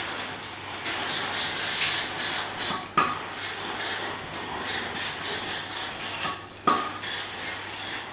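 Steam-generator iron hissing steadily as it releases steam while it is slid along a sleeve. The steam breaks off briefly twice, just before three seconds and about six and a half seconds in, and comes back each time with a sudden start.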